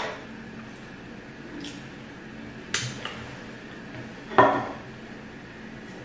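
Fingers scooping fufu and okra soup off a plate, knocking against it: four short, sharp clicks, the loudest a little past four seconds in.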